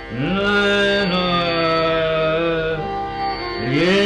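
Male dhrupad voice singing in Raga Adana, sliding up from a low note into a long held note, with a small ornament partway through and another upward slide near the end, over a steady drone.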